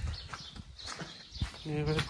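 Footsteps on a paved stone lane, with a sharper knock about halfway through. Just before the end comes a short, louder pitched voice-like sound.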